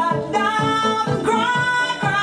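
A woman's voice singing over a backing track with a steady beat, some notes held long with vibrato.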